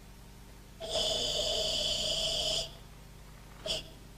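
A karateka's forceful ibuki breathing during a slow kata: one long, strained, hissing exhale of nearly two seconds starting about a second in, then a short sharp breath near the end.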